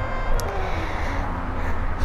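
Low steady rumble with a faint hum, and one small click about half a second in.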